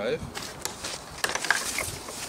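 Plastic packing wrap crinkling and rustling as it is handled, with a few sharp clicks in among it.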